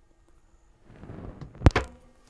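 An overhead cabinet door on spring-loaded lift hinges swung down and shut: a short rush as it moves, then one sharp thunk as it closes, with a couple of quick clicks just after.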